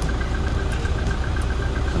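Car engine idling: a low, steady rumble.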